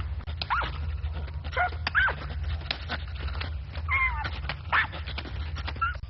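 Small cartoon creature vocalizing in short squeaky chirps that bend up and down in pitch, about five of them, with scattered clicks over a steady low rumble.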